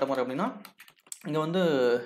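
A man talking in Tamil, with a few computer keyboard key clicks in a short pause about a second in.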